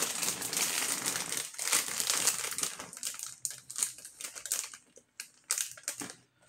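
Crinkling and rustling as something is handled. It is dense for about the first three seconds, then thins to scattered clicks and taps.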